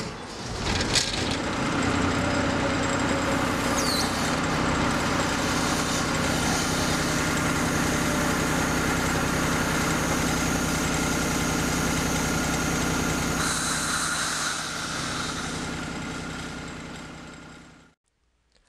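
Hytrans HydroSub 60 hydraulic power unit's engine running steadily under load, driving the submersible pump as the supply hose fills, after a knock about a second in. It fades out near the end.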